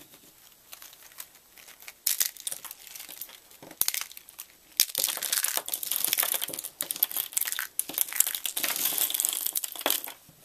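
Dry soap curls crackling and snapping as a hand crushes them into flakes: a few sharp crunches about two and four seconds in, then dense, continuous crunching from about five seconds on.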